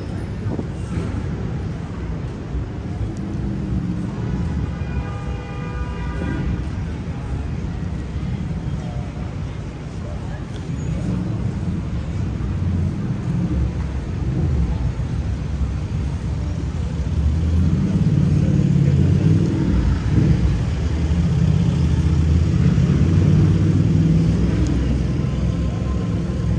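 City street traffic, with engines running low and steady, mixed with indistinct voices of passers-by. The traffic gets louder about two-thirds of the way through.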